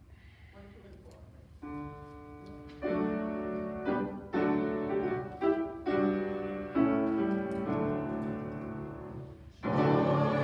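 Hymn introduction played on a keyboard: a series of held chords, entering softly about a second and a half in and louder from about three seconds. Right at the end the congregation comes in singing.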